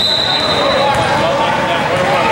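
A referee's whistle: one steady, shrill blast of about a second at the start. Voices of players and spectators carry on around it.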